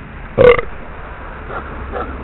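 A single short, low vocal noise from a person about half a second in, over a faint low hum.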